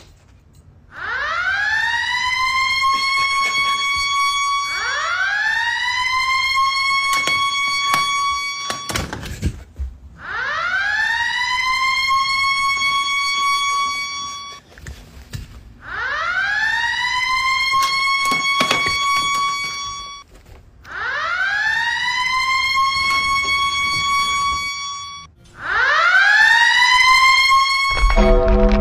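A siren wailing six times in a row. Each wail rises quickly to a high pitch, holds, then cuts off, and they repeat every four to five seconds.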